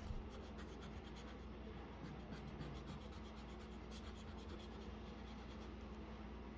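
Graphite pencil scratching on drawing paper in many quick, short strokes, faint, over a steady low hum.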